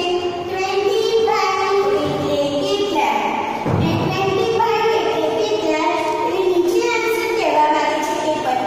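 A woman's voice reciting in a sing-song chant, drawing out pitched syllables the way a lesson is chanted to young pupils.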